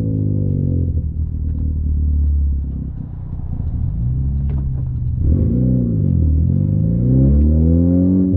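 Honda Civic Type R FK8's turbocharged 2.0-litre four-cylinder, heard from inside the cabin through a catless HKS downpipe and front pipe. The engine note falls and rises several times as the driver shifts gears and gets back on the throttle, with a dip and climb in pitch in the second half.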